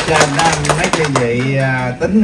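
A small group clapping by hand, dying away about a second in, with a man speaking into a microphone over and after it.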